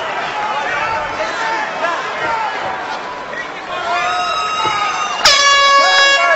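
Arena crowd noise with shouting voices, then a loud, steady horn starts suddenly about five seconds in: the horn that ends the final round of the fight.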